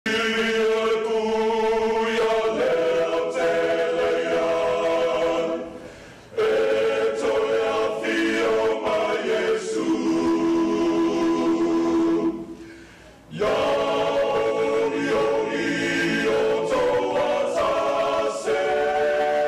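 A choir singing a hymn in harmony, with long held notes. There are two brief breaks between phrases, about six and thirteen seconds in.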